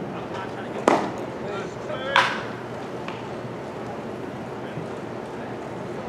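A pitched baseball smacking into the catcher's mitt about a second in, followed about a second later by a short sharp shout, over background voices.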